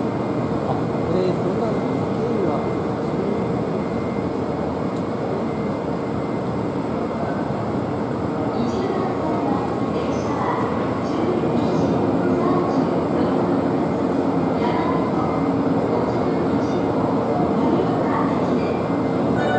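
Station platform ambience around a stationary Izukyu 2100 series electric train: a steady hum with a faint held tone, and indistinct voices of people on the platform.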